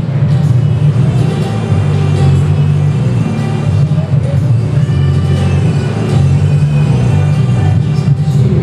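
Instrumental introduction of a song's recorded backing track played over a church loudspeaker, with sustained low bass notes and a melody above them.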